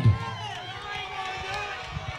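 Arena crowd chatter with a man's voice heard faintly in the background, away from the microphone.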